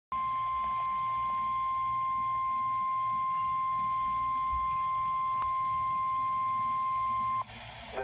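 NOAA Weather Radio 1050 Hz warning alarm tone played through a Midland weather alert radio's speaker: one steady, high-pitched tone that cuts off suddenly near the end. It signals that a warning, here a flash flood warning, is about to be broadcast.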